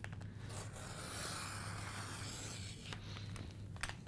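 Template Studio's gray cutting blade drawn along the acrylic circle guide, slicing through kraft poster board: a continuous scratchy scraping for about two and a half seconds, then a couple of sharp clicks near the end.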